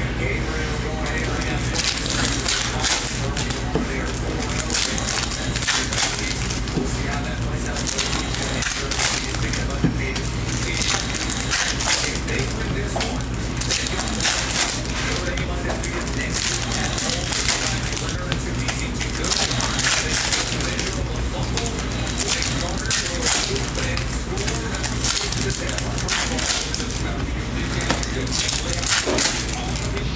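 Foil card-pack wrappers crinkling and tearing as packs are ripped open by hand, with cards shuffled and stacked. The crackle goes on without a break, over a steady low hum.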